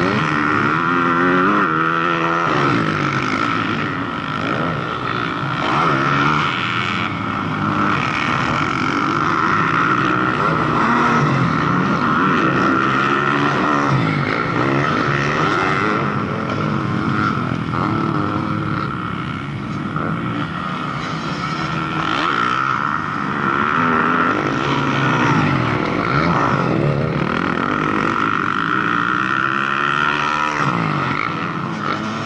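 Motocross dirt bikes revving around the track, several engines overlapping, their pitch rising and falling again and again as the riders accelerate and back off.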